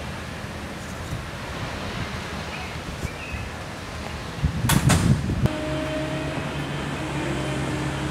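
Steady outdoor rumble of wind on the microphone, broken about halfway through by a short burst of loud thumping and crackling. After that, a steady low engine hum, with a few faint bird chirps.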